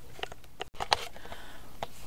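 Quiet room noise with a few small clicks and a short, soft breathy hiss just after the middle, broken by a sudden split-second dropout at an edit cut.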